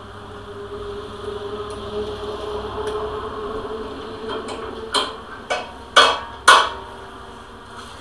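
Steel bolt and nut clinking against a steel trailer spring bracket as the bolt is fitted by hand. Four sharp metallic clicks about half a second apart come in the second half, over a faint steady hum.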